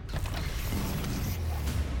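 Trailer sound design: a deep low rumble under a loud rushing, hissing noise that gets brighter about a second in.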